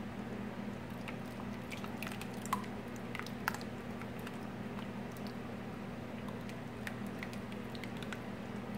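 Thick barbecue sauce pouring from a stainless steel bowl onto frozen meatballs in a slow cooker: soft wet squishes with scattered small ticks, over a steady low hum.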